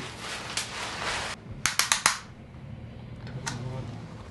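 A paper examination gown rustling and crinkling as it is opened and taken off, then a quick run of sharp snaps about halfway through.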